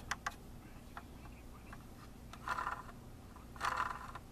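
Faint clicks and scraping as fingers work the front wheel of a diecast model stock car, whose front axle is a single rod with no steering. A couple of sharp clicks come near the start and two short rustling bursts come in the second half.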